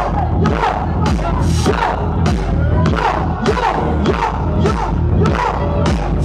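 Loud live electronic bass music with a heavy beat of about two hits a second, and a crowd shouting over it.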